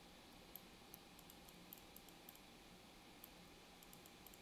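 Near silence: room tone with about a dozen faint, irregular clicks from a computer mouse being clicked while clone-stamping.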